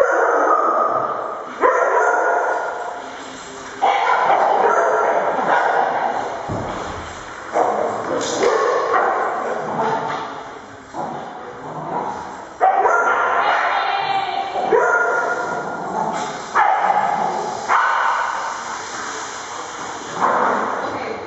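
Dogs barking and yipping while they play, sharp loud barks coming every second or two, each trailing off with an echo in a hard-walled room.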